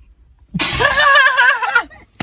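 A young man's high-pitched vocal outburst with a warbling, wavering pitch, about a second and a half long, starting about half a second in. It is a wordless cry more like a falsetto laugh or yelp than a sneeze.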